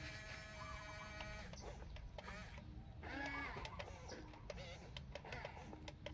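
Electric gear motors of a radio-controlled excavator whining as the boom and arm move: a steady whine for about the first second and a half, then shorter, wavering whirs with scattered clicks.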